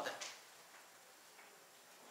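A man's spoken phrase trailing off in the first moment, then near silence: room tone with a couple of faint, soft ticks.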